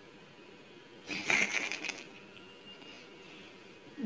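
A man's short, breathy laugh, about a second in and lasting under a second, then quiet room tone.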